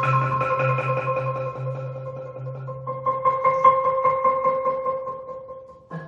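Prepared marimba, its bars fitted with small pieces of metal, plastic and rubber, played with rapid repeated mallet strokes that keep a few notes ringing. The lowest note drops out about halfway, and a new phrase of separate, changing notes begins near the end.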